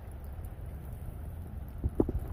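Low, steady wind rumble on the phone's microphone outdoors, with two soft thumps of footsteps or handling near the end.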